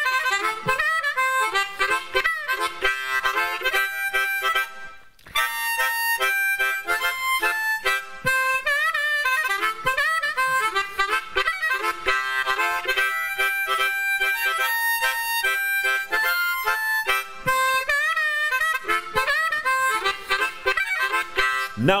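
Blues harmonica solo between sung verses, its notes bending and wavering, with a brief break about five seconds in.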